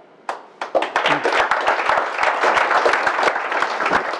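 A small audience applauding. A single clap comes first, then within the first second it swells into steady clapping from many hands.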